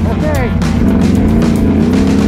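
Music with a singing voice, over the steady running of an ATV engine.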